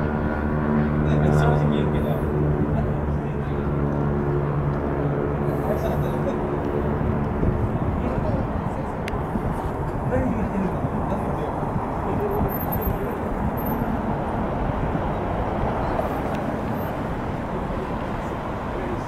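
Urban road traffic. For the first several seconds a nearby vehicle engine runs with a steady low hum, then it gives way to a continuous wash of passing-traffic noise.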